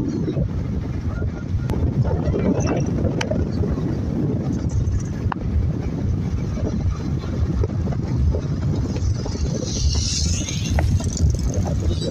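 Steady road and engine rumble heard from inside a moving car, with wind noise on the microphone and a brief rushing hiss, like a passing vehicle, about ten seconds in.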